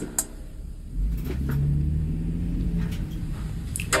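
A low, steady rumble with a deep hum, starting about a second in and easing off near the end.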